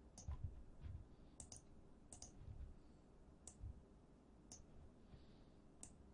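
Faint computer mouse clicks, about eight scattered over a few seconds, several in quick pairs.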